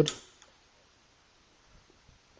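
A spoken word trailing off at the very start, then near silence with a few faint, light clicks.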